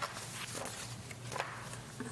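A few soft knocks and rustles, about three in two seconds, over a steady low hum of room noise.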